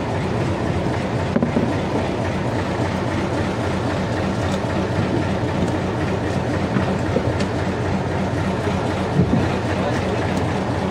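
A fishing boat's engine running steadily with a low rumble. A few short knocks, about a second and a half in and again near the end, come from fish and gear being handled on deck.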